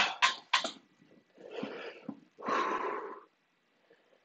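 A man breathing out hard through the mouth twice, the second breath longer and stronger, against the burn of a superhot Dorset Naga pepper. A few sharp clicks come at the very start.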